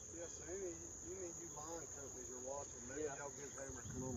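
Steady high-pitched drone of insects singing in the trees along the bank, unbroken throughout.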